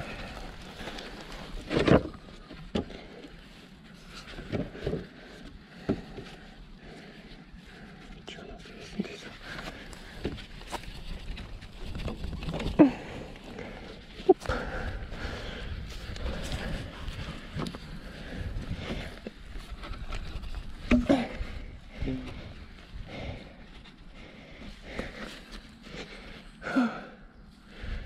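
Scattered knocks, clicks and scrapes of plywood ramp parts being handled and fitted together, with brief murmured voices between them.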